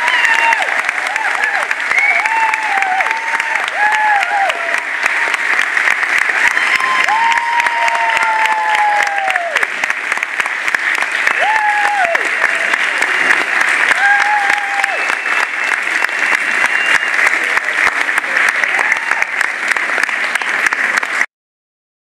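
Audience applauding steadily, dense clapping with a few voices calling out over it in the first half; it cuts off suddenly about a second before the end.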